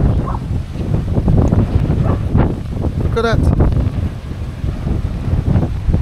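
Strong wind buffeting the microphone: a steady, loud low rumble that never lets up. A single short spoken word cuts through it about three seconds in.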